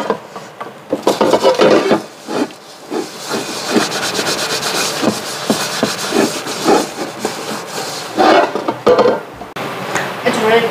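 A wooden spatula scraping and stirring in a metal pan: rapid, uneven strokes of wood rubbing on metal.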